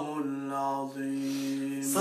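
A man's voice chanting the Quran (tilawa), holding one long, steady note that stops near the end: the close of the recitation.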